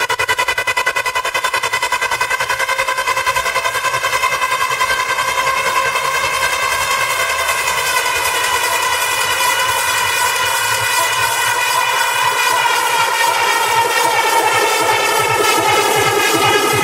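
Techno in a breakdown from a DJ set. A buzzing synth chord pulses rapidly with the kick drum dropped out and grows slowly louder and brighter, and the bass and kick come back in near the end.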